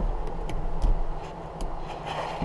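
A few light clicks and knocks as a monitor is fitted into its overhead mount, over a low rumble.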